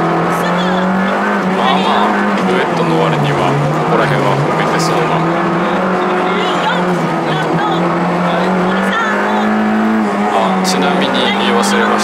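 Honda Integra Type R (DC2) four-cylinder engine, breathing through a 5ZIGEN exhaust manifold and Fujitsubo muffler, heard from inside the cabin at full rally pace: the revs climb and drop again and again as the driver accelerates, lifts and changes gear.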